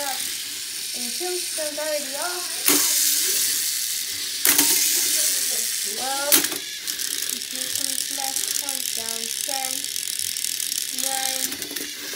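Small battery-powered Hexbug BattleBots toy robots whirring as they drive and spin, with three sharp knocks as they collide, about three, four and a half and six seconds in. Voices are heard over it.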